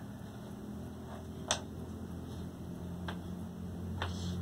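Chalk on a chalkboard as a sum is written: a few short ticks of the chalk striking the board, the clearest about one and a half seconds in, over a low steady hum.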